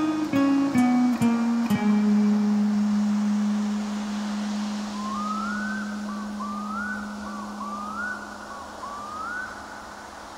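Quiet close of a metal track: fingerpicked acoustic guitar ending on a held low note that slowly fades away. From about halfway, four short rising cries repeat roughly every second and a half over the fading note.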